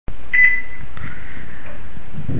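A short high electronic beep from the computer about a third of a second in, then a single click about a second in, over a steady low hum and hiss.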